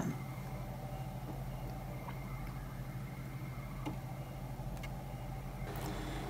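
Brother ScanNCut cutting machine drawing at slow speed with a quill pen in its carriage. Its motors give a low, steady hum with a few faint ticks.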